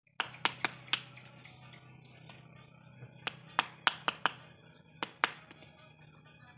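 Branches of a serut (Streblus asper) bonsai being cut with a hand pruning tool: sharp snaps in three quick groups, four just after the start, five a little past the middle and two near the end.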